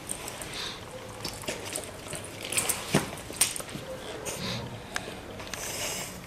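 Handling noise as a firefighter's breathing-apparatus face mask and its head straps are pulled on and adjusted: irregular rustling of straps and gear, with several sharp clicks and knocks.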